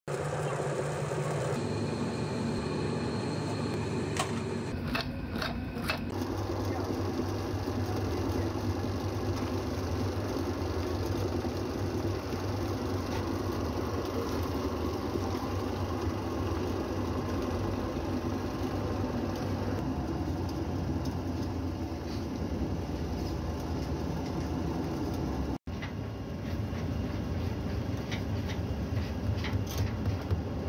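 Steady drone of workshop machinery running: a low hum with a noisy hiss above it. A few sharp clicks come around five seconds in.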